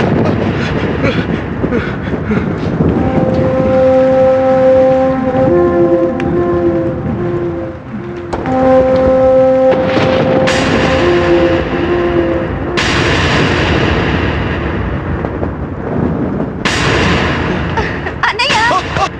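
Film soundtrack of a night storm: a steady rush of wind with several sudden thunderclaps that fade away, the last three about ten, thirteen and seventeen seconds in. Held, eerie music notes sound over it through the middle, breaking off briefly around eight seconds.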